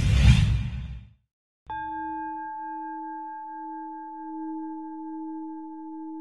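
A production-logo sting: a loud whoosh, then about a second and a half in a struck bell-like chime that keeps ringing with a slow waver.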